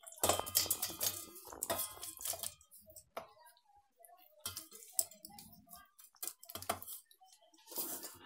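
Soft lemon pieces tipped from a plastic bowl into a stainless-steel mixer-grinder jar and pressed down by hand: a string of irregular knocks, clinks and scrapes against the steel, the busiest in the first two seconds.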